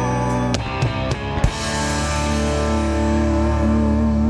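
Live rock band with electric guitars, acoustic guitar and drum kit playing an instrumental passage with no singing. A few drum hits come in the first second and a half, then the band holds a long sustained chord.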